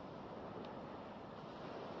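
Quiet, steady wind and ocean surf: an even rushing hiss with no music.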